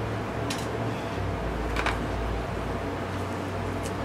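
Electric room fan running steadily, with three faint clicks from small objects being handled.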